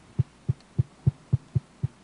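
Seven short, evenly spaced low thumps, about three or four a second, over a faint hum.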